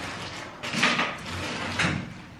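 Milk pouring from a carton into a wok, a splashing trickle that swells louder about a second in and again near the end.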